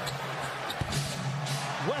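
Arena music holding a steady low note over the crowd noise of a live basketball game, with a single thud a little under a second in.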